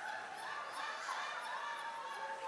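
Scattered laughter and wordless cries from several people in a congregation, over a steady held tone.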